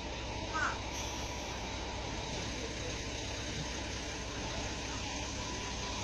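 B-double truck's diesel engine running steadily at low revs while it manoeuvres, with a brief high squeak about half a second in.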